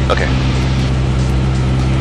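Single-engine light training aircraft's piston engine and propeller droning steadily, heard inside the cockpit, with a short spoken "okay" at the start.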